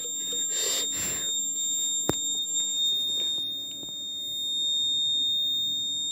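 Piezo alarm buzzer on the board sounding one continuous high-pitched tone, signalling its over-temperature danger alert. A single sharp click about two seconds in.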